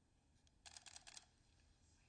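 Camera shutter firing a quick burst of about half a dozen faint clicks, lasting about half a second, roughly a second in.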